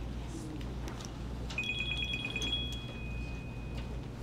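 An electronic alert tone: two high pitches pulse rapidly for about a second, then hold steady, the upper one stopping first and the lower one cutting off near the end. Underneath runs a steady low room hum.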